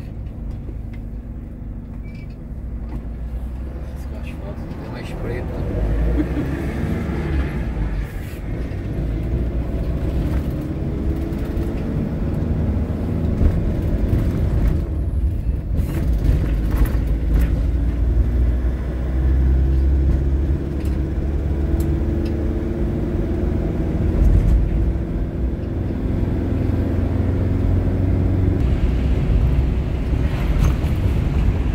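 Motorhome engine and road noise heard from inside the cab as it pulls away and accelerates, the engine note rising several times as it goes up through the gears, then settling into a steady highway drone.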